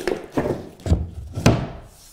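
MDF baseboard being set against the wall and floor over a bead of adhesive: about four wooden knocks, the loudest about a second and a half in.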